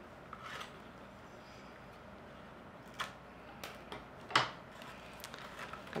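Light rustling and a few short ticks of a flat reed weaver being drawn out from between the reed spokes of a woven basket. The sharpest tick comes a little past the middle.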